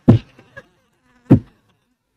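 Two short, loud thumps about a second and a quarter apart, with near silence around them.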